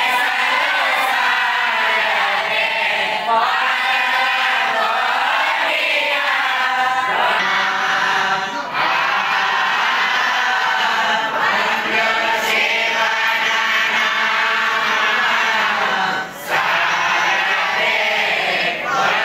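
Chanted recitation by voice, in long sustained phrases, with short breaks for breath about nine and sixteen seconds in.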